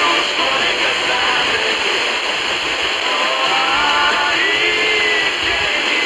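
Weak long-distance FM broadcast through a Tecsun PL-310ET portable receiver's speaker: faint music barely above heavy static hiss, coming through a little more clearly about halfway in.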